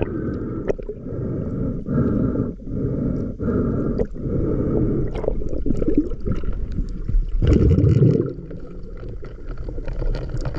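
Underwater water noise picked up by a submerged camera: a low, churning rush with gurgling, swelling in regular pulses during the first few seconds and surging loudest about seven and a half seconds in.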